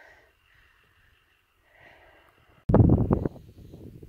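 Near silence for about two and a half seconds, then a sudden loud burst of low rumbling noise, air blowing across the phone's microphone, that lasts about half a second and trails off into a softer rush.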